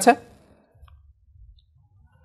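A voice trails off at the very start, followed by quiet room tone with two faint small clicks, about a second in and half a second later.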